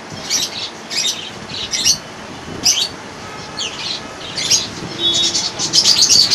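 Small birds chirping: short, high chirps repeating every half second or so, coming thicker and faster near the end.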